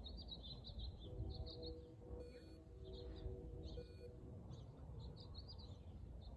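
Small birds chirping in quick repeated calls over a low outdoor rumble. From about a second in, a faint steady hum of several pitches joins underneath for a few seconds, then fades.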